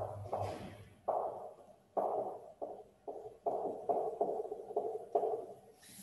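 Marker writing on a whiteboard: a dozen or so short scratchy strokes with brief pauses between words.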